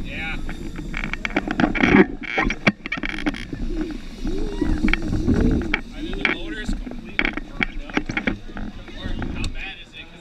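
Indistinct voices mixed with repeated clattering knocks and rattles.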